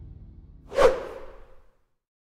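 A single whoosh sound effect about a second in, swelling quickly and then fading away.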